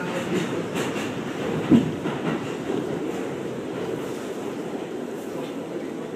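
Subway train car running, heard from inside the car: a steady noise of wheels on the track, with one loud knock a little under two seconds in.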